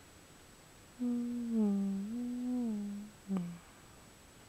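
A woman humming a short, slow phrase of a few held notes that glide from one pitch to the next, starting about a second in and ending with one brief note.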